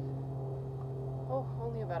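Steady low mechanical hum with a few even overtones, unchanging throughout.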